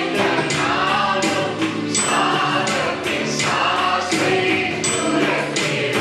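A group of men singing a worship song together, with instrumental backing and a steady beat about once a second.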